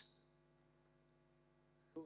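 Near silence, with only a faint steady electrical hum.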